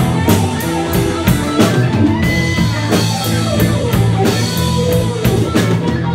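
Live blues-rock band playing an instrumental passage: electric guitars and bass guitar over a drum kit keeping a steady beat of about three hits a second.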